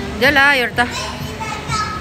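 A small child's voice calling out once, high-pitched and wavering, for about half a second near the start, followed by quieter held tones.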